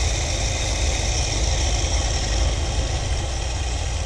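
Ford 302 small-block V8 idling steadily on an Edelbrock 600 cfm four-barrel carburetor while an idle mixture screw is turned in toward its seat, leaning the idle. The engine is running cold-blooded, with a clog suspected on one side of the carb.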